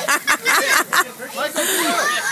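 Children's voices shouting and laughing in a food fight, with crinkling rustle from clear plastic ponchos and sheeting, growing hissier near the end.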